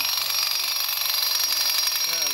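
Cicadas buzzing in the trees: a steady, high-pitched, pulsing drone.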